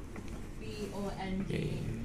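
A person talking, over a low steady hum.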